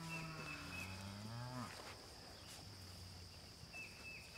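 A heifer moos once, a call of nearly two seconds that rises in pitch at its end.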